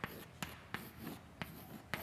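Chalk writing on a blackboard: several sharp taps of the chalk against the board with faint scratching between them.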